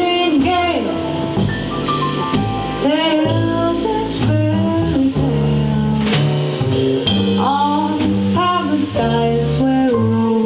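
Live jazz combo playing a slow ballad: a woman singing into a microphone over plucked double bass, piano and drums, the bass notes moving about every half second.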